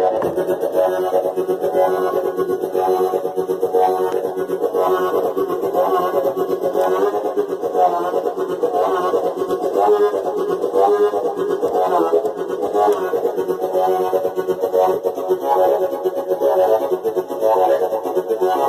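Access Virus TI synthesizer playing a sustained, dense patch with a steady repeating pulse.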